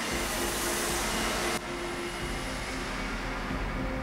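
A large diesel wheel loader's engine running steadily, with a sudden change in the sound about one and a half seconds in.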